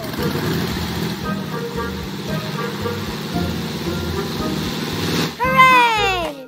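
Animated propeller plane's engine sound effect running steadily with a low rumble, cut off about five seconds in by a child's excited voice.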